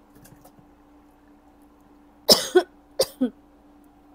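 A woman coughing: one hard cough about two seconds in, then two shorter ones, set off by the sting of the guajillo chile fumes.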